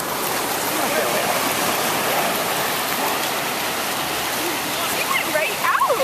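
Ocean surf at the shoreline: a steady, even wash of breaking waves and shallow water.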